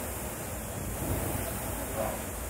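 Concept2 SkiErg's air-resistance flywheel fan whooshing as the handles are pulled. It swells with a stroke about a second in and again near the end.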